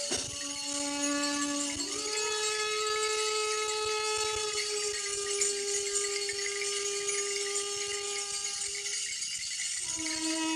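Live big-band jazz: long sustained notes, the held pitch moving up about two seconds in and holding until near the end, over a steady high shimmer.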